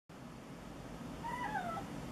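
Tabby-and-white domestic cat giving one short meow a little past a second in, falling in pitch as it ends.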